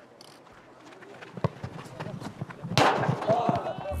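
Outdoor youth football match: quiet at first with a few short knocks, then a burst of shouting from players and the sideline about three seconds in, as an attack on goal builds.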